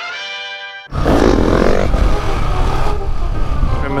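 A short held musical chord, then about a second in a sudden cut to the loud noise of a motorcycle under way, its engine and rushing air filling the sound.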